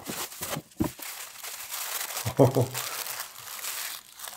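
Bubble wrap and packing paper crinkling and rustling as they are handled and pulled apart to unwrap a small figure. There are a few sharp crackles in the first second, then dense continuous crinkling.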